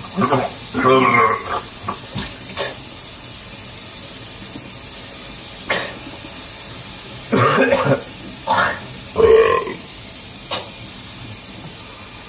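A few short non-word vocal bursts from people, laughter near the start and throaty, burp-like sounds later, over a steady hiss, with a few sharp clicks in between.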